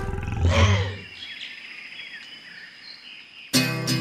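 Logo sound sting with a loud, low roar-like swell about half a second in. It fades to a quieter stretch of short chirps over a thin steady high tone. Acoustic guitar strumming starts suddenly near the end.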